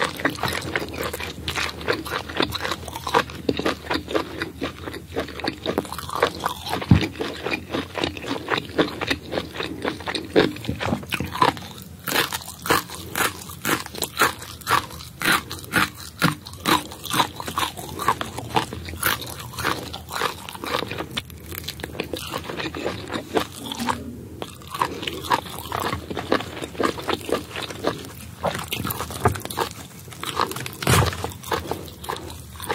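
Close-miked chewing and crunching of steamed sand iguana meat and small bones, a steady run of wet, crisp chews about twice a second. Near the end, fingers pull the lizard's carcass apart.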